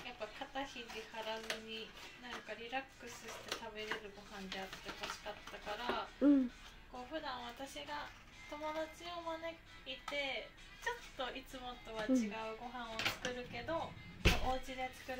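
A woman's voice speaking over background music, with light kitchen clicks and clatter.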